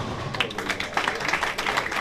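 Ten-pin bowling ball hitting the pins, then scattered audience clapping with many sharp claps through the rest.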